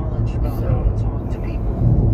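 Inside a moving truck's cab, steady low engine and road noise drones under soft, indistinct talk.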